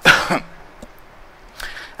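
A man coughs once, a loud, sudden burst, in the first half second.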